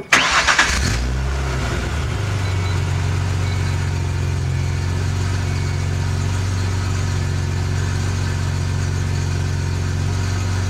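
Supercharged 4.0 L V6 Mustang starting up through MAC long-tube headers, a MAC Prochamber and Magnaflow resonators and mufflers. It catches with a brief flare in the first second, then settles into a steady idle at the tailpipes.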